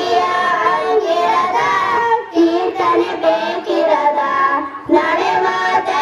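A girl and two boys singing a song together into microphones, in long held notes with short breaks between phrases.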